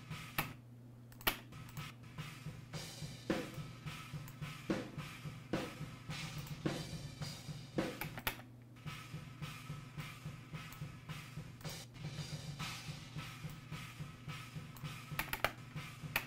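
Recorded acoustic drum kit playing back: repeated kick and snare hits under a wash of cymbals.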